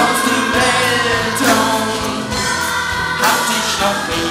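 A live pop-rock band with guitars and drums plays, with a choir of voices singing over it.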